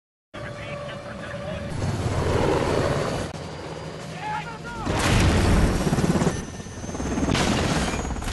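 War-film sound effects of a military helicopter going down: rotor noise and shouting voices, then a heavy crash boom about five seconds in and another blast near the end.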